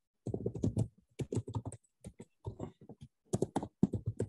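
Typing on a computer keyboard: quick runs of key presses with short pauses between them, starting a moment in.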